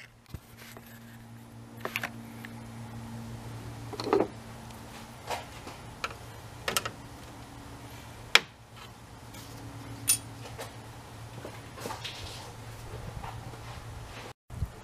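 Scattered clicks and knocks, roughly one every second or two, as the metal retaining clips on a plastic electric AC fan shroud are worked loose by hand. A steady low hum runs underneath.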